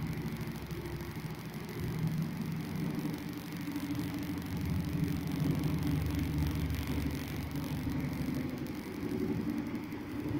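A steady low rumbling hum, swelling a little toward the middle and easing near the end.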